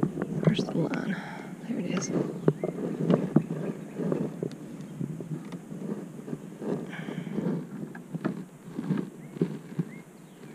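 Irregular knocks, taps and rustles of a bream being handled and unhooked in a rubber landing net resting on a plastic kayak.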